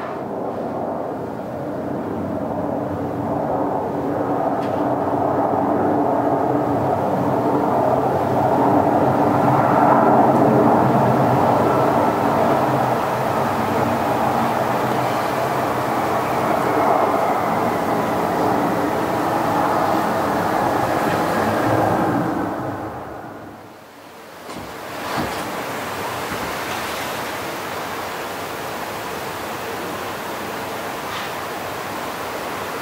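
A dense, rumbling noise drone with faint steady tones running through it, swelling and then fading away a little past two-thirds of the way in; after a brief dip and a single thump, a thinner hissing noise follows.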